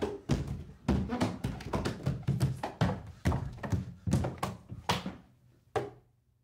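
Children's feet thumping down a carpeted wooden staircase: a dozen or so irregular thuds, two or three a second, thinning out with one last thud near the end.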